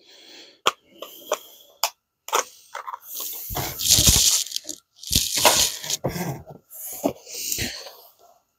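Unboxing handling noise. First come a few sharp clicks and rattles from a small clear plastic tool case. Then a cardboard accessory box scrapes and rustles as it is slid and lifted out of foam packing, in several bursts about halfway through and near the end.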